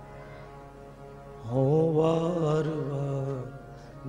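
Harmonium sustaining a steady chord under Sikh shabad kirtan; about a second and a half in, a male voice enters singing one long, wavering held note, which fades away shortly before the end.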